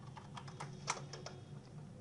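Typing on a computer keyboard: a few faint, unevenly spaced key clicks.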